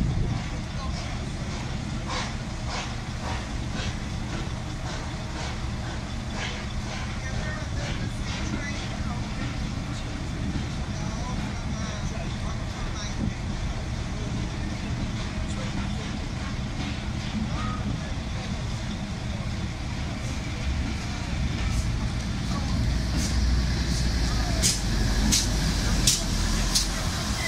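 Heritage train coaches rolling slowly past with a steady low rumble and scattered clicks and knocks from the wheels and running gear. Near the end the rumble grows louder and the clanks sharpen as the GWR Manor-class steam locomotive at the rear comes by.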